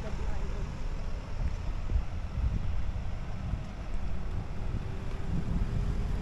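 Wind rumbling on a handheld camera's microphone during a walk, with a faint steady hum joining in the second half.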